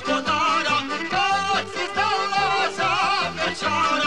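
Bosnian izvorna folk music: a wavering, ornamented melody over a steady, evenly pulsed accompaniment.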